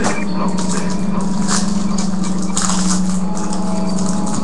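Foil wrapper of a baseball card pack crinkling and tearing in short scrunches as it is pulled open by hand, over a steady low hum.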